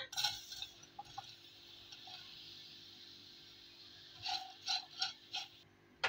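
Diced zucchini tipped from a steel bowl into a hot nonstick pot of browned orzo, landing with a clatter and then sizzling faintly and steadily. About four seconds in, a spatula knocks and scrapes against the pot four or five times.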